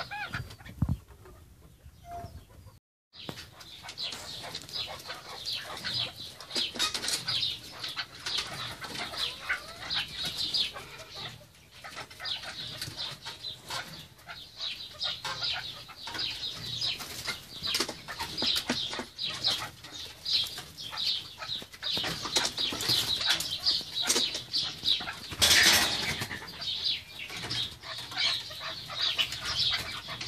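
Keklik partridges calling in a long run of rapid, repeated clucking notes while the male courts the female, starting about three seconds in. A louder rushing burst comes near the end.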